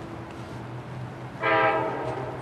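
Horn of an approaching train: a loud blast of several notes sounding together starts suddenly about one and a half seconds in, over a low steady hum.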